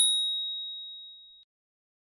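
Notification-bell sound effect: a single high ding, struck once and ringing away over about a second and a half.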